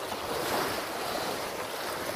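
Small waves breaking and washing up a sandy beach: a steady hiss of surf.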